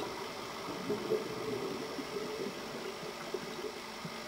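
Faint steady underwater drone with a wavering low hum, heard through a dive camera's housing. It is much quieter than a diver's bubbling exhalation.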